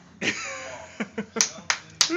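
A short vocal sound, then about a second in four sharp clicks come in quick succession.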